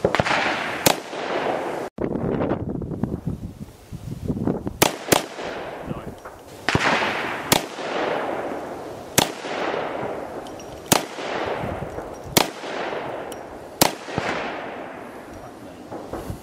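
Desert Eagle pistol firing a slow string of single shots, about nine in all, one every one and a half to two seconds, each crack trailing a long fading echo.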